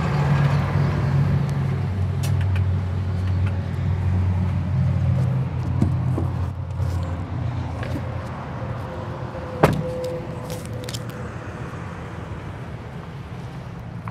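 A steady low mechanical hum, strongest at first and fading over the first half. A single sharp click comes near ten seconds in.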